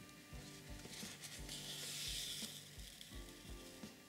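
Embroidery thread drawn through crocheted yarn fabric with a needle: a soft hiss lasting about a second, starting just over a second in. Quiet background music with a steady low pulse plays throughout.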